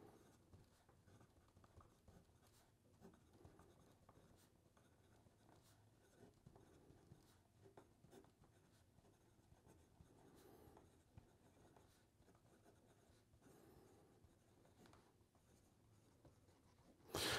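Very faint scratching of a broad-nib fountain pen writing on paper, with scattered soft ticks.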